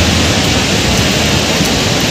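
Steady rush of floodwater pouring through a dam's open spillway crest gates.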